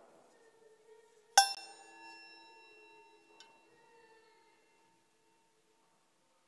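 A metal altar vessel struck once, giving a bright clink that rings on for about three seconds, then a fainter tap about two seconds later.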